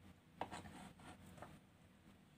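Faint sounds of a knife and hands on a plastic cutting board while a soft steamed turnip cake is sliced: a sharp tap a little under half a second in, light scraping and rubbing for about a second, and a small tick about a second and a half in.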